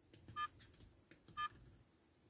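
iMountek car DVR's button beeps: two short electronic beeps about a second apart as its keys are pressed to switch between camera views.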